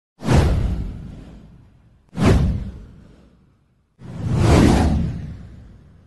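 Three whoosh sound effects of a title-card intro, each with a deep low end. The first two hit suddenly and fade over about a second and a half; the third swells in more slowly and fades out.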